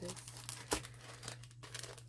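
Plastic packaging crinkling as it is handled by hand, with one sharper click about three-quarters of a second in.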